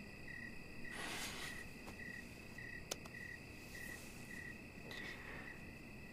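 Faint cricket chirping: a high, steady chirp repeating about twice a second, with a couple of soft rustles.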